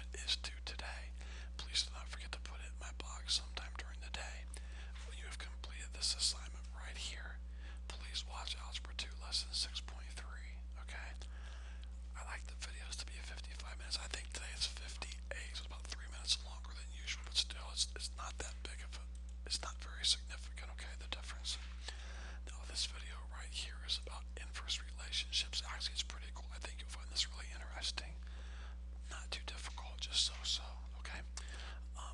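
A person's voice, faint and whispery, coming in short broken stretches throughout, over a steady low electrical hum.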